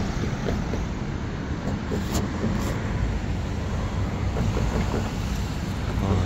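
Steady road traffic noise from cars driving along a multi-lane street, a low rumble of engines and tyres.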